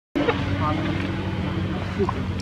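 A steady low motor hum, as from an engine running some way off, with short faint voices over it. It begins after a brief silence at the very start.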